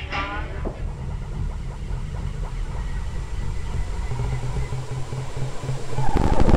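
Lo-fi experimental noise music. A ringing note dies away in the first second over a low, pulsing rumble that slowly grows louder. Right at the end it breaks into a much louder wall of harsh noise.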